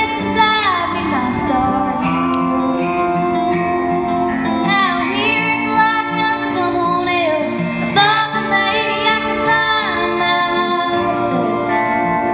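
A woman singing a country ballad live into a microphone, holding long notes with gliding pitch, over a steady instrumental backing.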